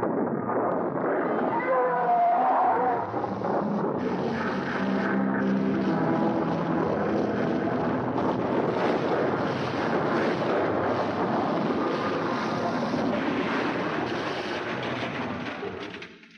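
Dense monster-film soundtrack: loud dramatic music mixed with battle sound effects, with a wavering high cry about two seconds in. It fades away near the end.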